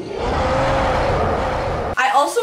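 The Hulk roaring in a film clip: one long, rough, loud bellow that cuts off suddenly at the end.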